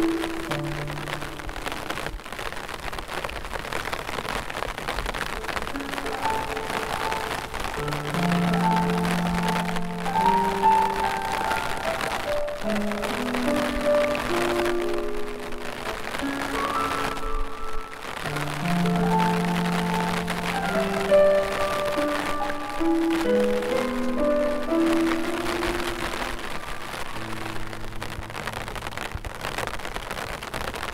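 Slow solo piano music over steady falling rain, with a brief pause in the piano just past halfway.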